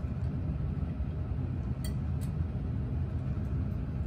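Steady low rumble of lab ventilation. About two seconds in there are two faint clicks of glassware being handled, a test tube and a dropper.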